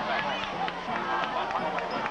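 Football crowd in the bleachers: many spectators talking and shouting at once, a few louder shouts standing out, with band music in the mix.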